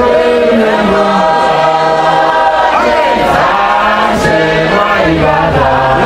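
A congregation singing a church hymn together, with a man's voice leading through a microphone, in long held notes that step down in pitch.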